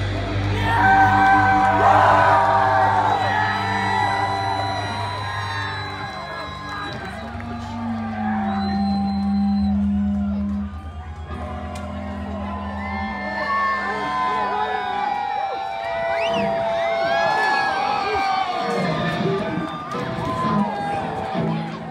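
Live rock band's guitars and bass letting held notes ring after a loud final hit, with the crowd cheering and whooping over them.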